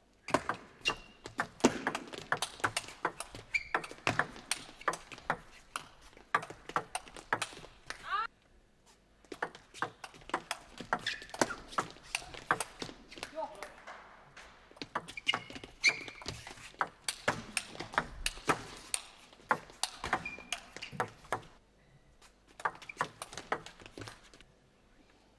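Table tennis rallies: the celluloid ball clicking sharply off paddles and table in quick irregular exchanges, with a few short high squeaks of shoes on the court floor. Two brief pauses fall between points.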